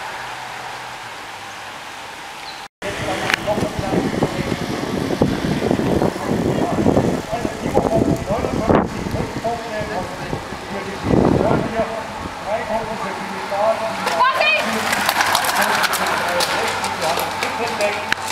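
Voices of roadside spectators as a bunch of racing cyclists passes. The sound cuts out briefly about three seconds in. Near the end a dense run of sharp clicks sets in.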